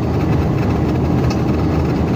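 Steady road and engine noise inside a car's cabin while cruising on a highway: an even low rumble of engine and tyres.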